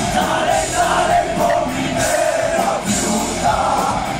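Heavy metal band playing loud live in a club, with singing and cymbal crashes recurring over the dense, sustained band sound.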